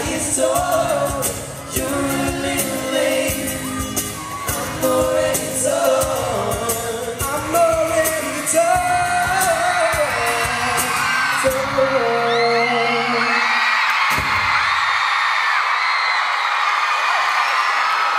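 Live pop concert heard from within the audience: a boy band's vocals over a band with acoustic guitar, with fans screaming. About twelve seconds in the music stops and only the crowd's high-pitched screaming remains.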